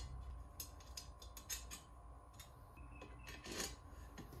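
Faint, irregular light clicks and scraping of small metal parts being handled and fitted into the aluminium extrusion frame of a laser engraver, with a slightly louder click and rub a little before the end.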